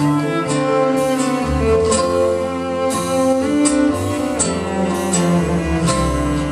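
Instrumental passage on a bowed cello carrying a sustained melody over acoustic guitar, with short percussive strokes every half second to a second.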